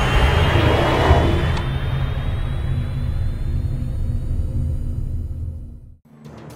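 Cinematic intro music: a deep, steady low rumble with a faint rising tone above it, fading away to near silence right at the end.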